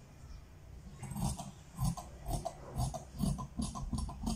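Fabric scissors cutting through lining cloth along a chalk line: a run of short snips, about three a second, starting about a second in.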